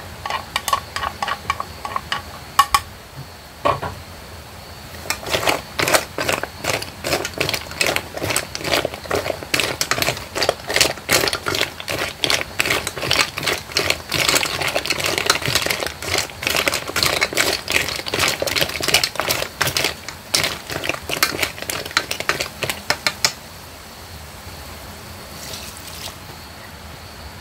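Snail shells clattering against one another and the aluminium pot as they are stirred with chopsticks: a quick, uneven run of clicks and knocks that is sparse at first, thick through the middle and easing off near the end.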